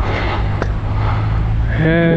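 Skateboard wheels rolling on rough asphalt, a steady rumble with one short click about two-thirds of a second in. A voice calls out near the end.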